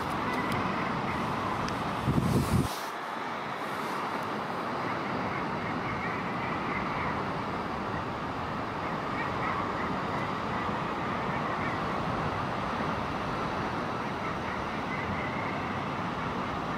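A common guillemot colony calling, a dense and steady chorus from the birds crowded on the cliff ledge. About two seconds in there is a brief, loud, low rumble.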